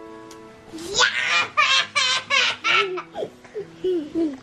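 A young child laughing in a quick run of about five high giggles, over soft background music.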